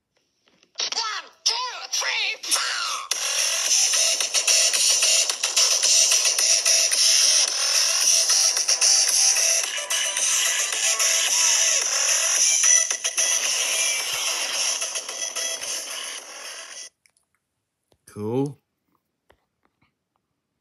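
Loud music with a voice, played back through a tablet's small speaker, cutting off suddenly after about sixteen seconds. A little later comes one short sound that falls steeply in pitch.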